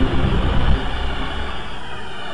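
A Windows startup sound stacked in many pitch-shifted copies, from several octaves down to slightly up. The chord's sustained tones break up into a dense, rough rumbling noise that slowly fades, with faint high tones entering near the end.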